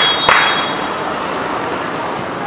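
Outdoor football match ambience: a steady rush of background noise with a sharp smack just after the start, and a thin, steady high whistle tone lasting about the first second.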